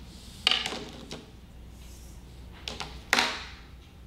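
Rubber squeegee blade being handled and slid into a plastic holder strip of a vacuum floor tool: sliding and rubbing noise with two sharp plastic clacks, about half a second in and again just after three seconds.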